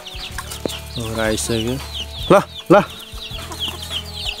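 Young chickens peeping continuously with many small high-pitched cheeps, while a man calls the flock with short sung calls about a second in and twice more, short and loud, halfway through.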